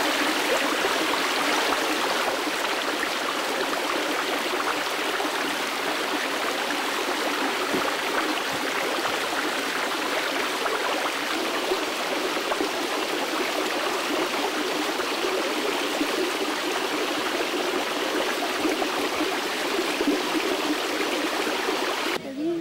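Stream water rushing steadily over rocks, ending with a sudden cut.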